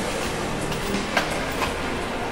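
A steady mechanical rumble with a couple of short clicks a little past the middle and faint held tones underneath, a sampled ambience within an electronic sound-collage track.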